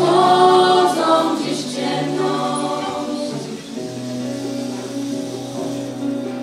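A young mixed vocal group singing together into microphones, accompanied by acoustic guitar. The massed voices thin out a little past halfway, leaving quieter held notes and the guitar.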